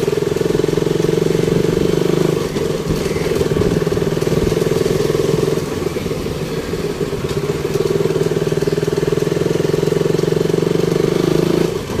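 Motorcycle engine running steadily while riding at low speed, its level dipping briefly a couple of times.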